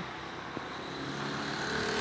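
A motor vehicle's engine hum, growing gradually louder over steady outdoor background noise.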